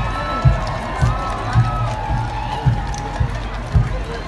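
Marching band music with a bass drum beating a steady march, about two beats a second, over the chatter of a large crowd.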